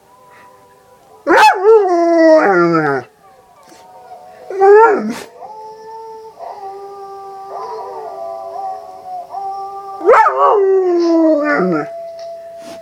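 A dog howling: three loud howls, each sliding down in pitch, about a second in, around four and a half seconds and around ten seconds. Fainter steady held notes sound between them.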